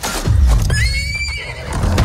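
A horse neighing loudly, a single whinny that rises and then falls, about half a second in, over a sudden deep rumble that hits at the start and carries on underneath.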